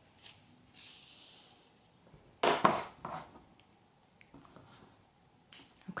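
Quiet handling of yarn and a crocheted piece: a soft hiss about a second in, one louder brief sound about two and a half seconds in, and a few small clicks. The yarn tail is worked in with a tapestry needle and trimmed with small scissors.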